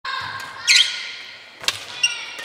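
Badminton rally on a wooden gym floor: a high shoe squeak about two-thirds of a second in, then a single sharp crack of a racket hitting the shuttlecock near the end, ringing in the large hall.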